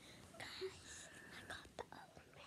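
A person whispering quietly, with a couple of soft clicks near the end.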